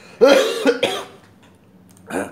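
A person coughing: a quick run of about three loud coughs in the first second, then quiet room tone.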